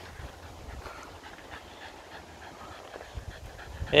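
A Patterdale terrier panting.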